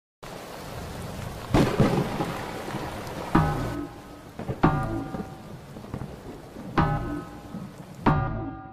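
Steady rain with claps of thunder, the loudest about a second and a half in. Piano-like keyboard chords are struck three times from about three seconds in, each ringing and fading.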